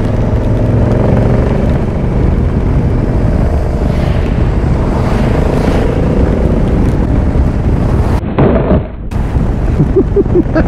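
Motorcycle engine running as the bike picks up speed, buried in heavy wind noise on the microphone and tyre hiss from the wet road. Near the end the sound goes duller and dips for about a second.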